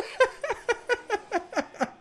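A man laughing in a run of short bursts, about four or five a second, each dropping in pitch.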